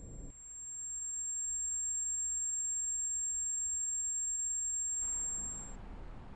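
A steady, piercing high-pitched electronic ringing tone swells in about half a second in, holds, and fades out near the end. While it sounds, the room noise drops away.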